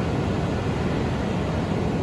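Steady roar of ocean surf breaking on a sand beach, heavy in the low end, with the sea running high.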